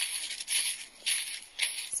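Footsteps crunching through dry leaves and grass, about two steps a second.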